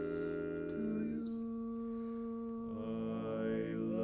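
Barbershop quartet of four men singing a cappella in close four-part harmony, holding long sustained chords. The chord changes about a second in and again near three seconds.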